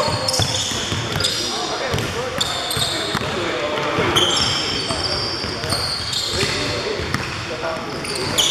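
Basketball game sounds on a hardwood gym floor: sneakers squeak in short, high-pitched chirps again and again, and the ball is dribbled with sharp bounces. The large hall is echoey.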